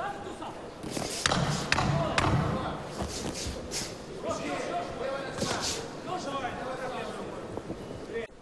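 Boxing arena din in a large hall: voices from the crowd and ringside, with about five sharp slaps and thuds of punches landing during the bout.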